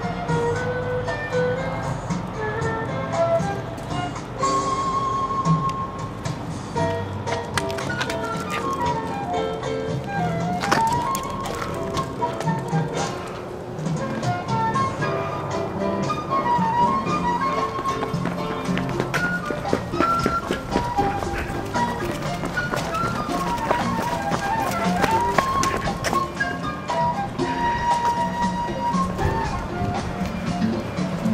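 Background music: a melody of held notes, with quick runs that dip down and climb back up twice.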